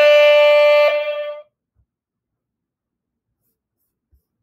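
A person's voice holding one sung note after a quick upward slide into it. The note ends about a second and a half in, and near silence follows.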